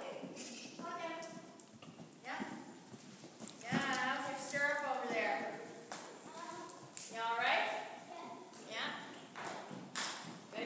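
Hoofbeats of a horse cantering on soft arena footing, under a person's voice calling out in several stretches, which is the loudest sound.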